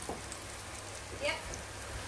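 Stir-fry noodles sizzling steadily in a frying pan.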